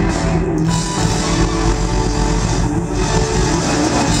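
Live funk band playing loudly on drums, bass guitar, electric guitar and keyboards, with the full mix sounding steady.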